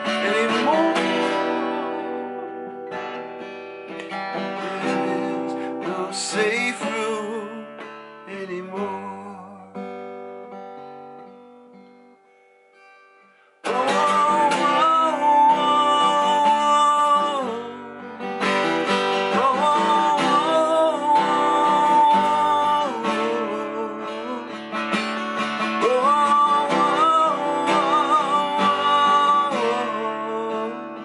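Martin D-18 acoustic guitar being strummed while a man sings. About ten seconds in, the playing dies away almost to silence. A few seconds later it comes back suddenly at full level, with voice and guitar together.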